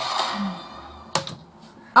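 A sharp click just past a second in, followed at once by a fainter one, against quiet room tone.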